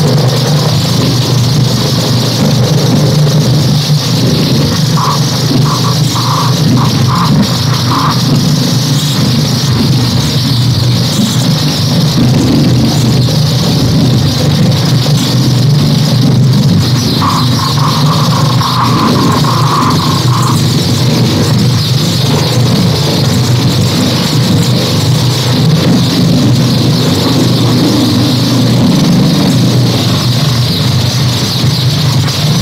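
Dense electro-acoustic improvised noise music: a loud, steady low drone under a hissing high band. A few short beeps come about five seconds in, and a held mid-pitched tone sounds for about three seconds a little past the middle.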